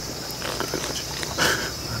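Sniffling from people crying, with a louder sniff about one and a half seconds in, over a steady chirring of night insects.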